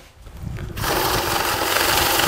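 Electronic bill counting machine running a stack of banknotes through its feed rollers at speed: a steady rapid whirr that starts just under a second in.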